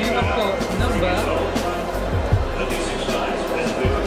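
Music with a thudding bass beat, over indistinct crowd voices.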